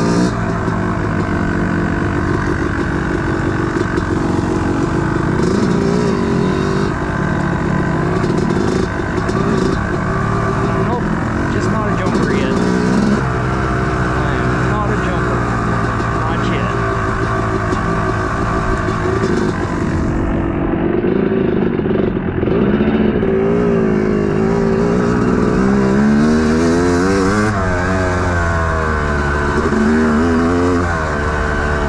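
A 250 cc two-stroke dirt bike engine under way, its pitch climbing and dropping again and again as the throttle is opened and closed and the gears change, with a long rising rev near the end.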